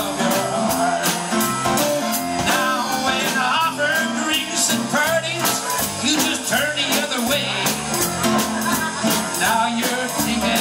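A live country-rock band playing an instrumental passage: drums keeping a steady beat under keyboard and guitar.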